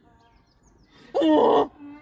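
A loud animal call, one pitched cry of about half a second starting about a second in, so strange that it is joked to be an escaped dinosaur; faint bird chirps before it.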